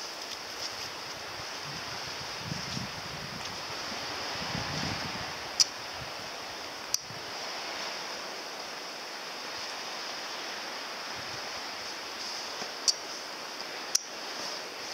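Steady outdoor hiss of wind and the nearby sea, broken by a few sharp clicks, the loudest about five and a half seconds in.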